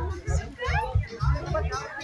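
Children's voices chattering and calling out over background music with a steady bass beat.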